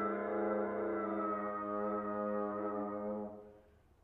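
Solo French horn holding one long low note that fades out about three and a half seconds in.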